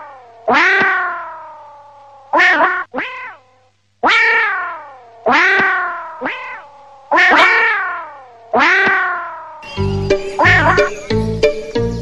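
A cat-meow sound effect repeated about eight times, each call nearly identical, starting sharply and falling in pitch. About ten seconds in, a music track with a beat comes in.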